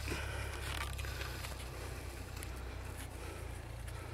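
Gloved fingers scratching and digging in loose soil to work a buried stone adze free. The sound is faint and crackly, with a few small clicks, over a steady low hum.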